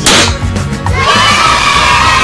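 A confetti-cannon pop, a single sharp bang, then about a second in a crowd of children cheering, held steady, as a cartoon sound effect over background music.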